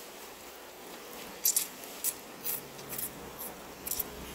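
Close-miked chewing of noodles and crispy pork: a few short, crisp clicking and crackling mouth sounds in the second half, over faint room noise.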